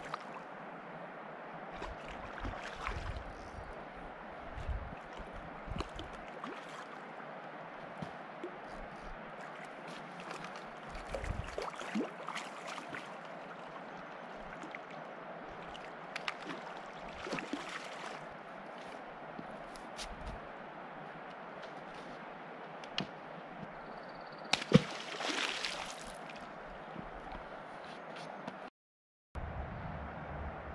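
Hooked carp splashing and sloshing the river water as it is fought to the bank and scooped into a landing net, over a steady wash of moving water. Scattered light clicks run through it, with a sharp knock near the end.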